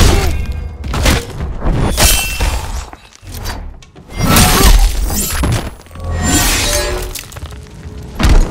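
Sword-fight sound effects over music: about five heavy blade clashes and impacts, some ringing like struck metal and some with a shattering, breaking crash.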